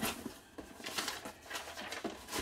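Cardboard box flaps being pulled open by hand: a few faint scrapes and taps of cardboard.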